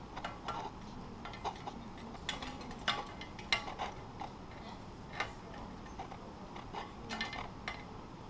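Irregular light metallic clicks and clinks of steel mailbox mounting brackets being handled and fitted against the post, a few sharper ones in the middle.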